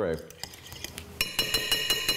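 Metal spoon stirring mustard and sour cream in a glass mixing bowl, striking the glass. From about a second in come quick clinks, about six a second, each ringing briefly.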